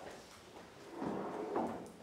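Footsteps on a hard floor, then a brief scraping sound about a second in.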